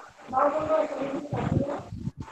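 Indistinct speech over a video call: a voice talking too unclearly for words to be made out.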